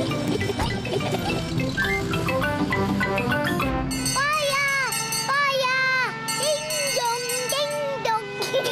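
Busy cartoon music, then from about four seconds in a cartoon fire engine's siren sounds in a string of short wails that rise, hold and fall.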